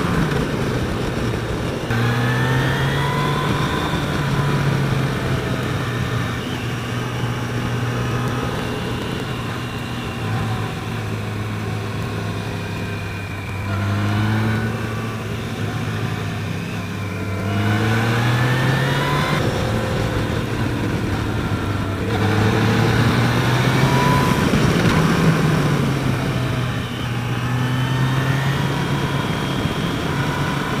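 Yamaha FJR1300 sport-touring motorcycle's inline-four engine under way, its note climbing under acceleration and dropping back several times through gear changes and throttle changes on a winding road, with steady wind rush on the camera microphone.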